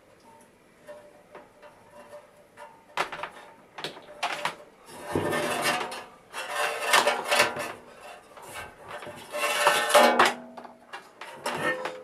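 Handling noise from a sheet-metal instrument cabinet as its power cord is worked out through the hole in the cabinet side: scattered clicks, then several longer bursts of scraping and metallic rattling from about three seconds in.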